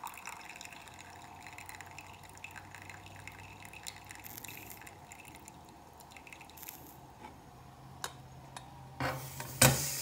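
Espresso poured in a thin trickle from an aluminium stovetop moka pot into a ceramic mug, a faint dripping, splashing sound. Near the end come a couple of louder clacks.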